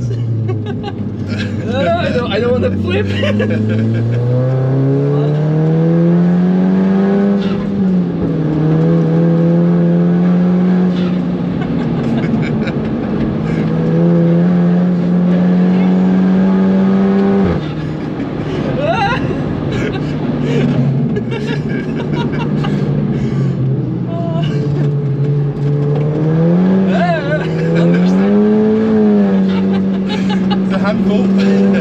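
Inside the cabin, a modified VW Caddy's turbocharged Audi S3 2.0 TFSI four-cylinder engine is running at full throttle. It rises in pitch as it revs, and the pitch drops sharply at two quick DSG upshifts, about eight and seventeen seconds in. Near the end the revs dip and rise again briefly.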